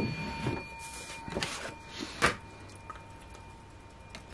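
Paper scratch-off ticket being handled and slid off a wooden table: brief rustles and scrapes, with one sharp tap about two seconds in. A faint ringing tone fades out in the first second.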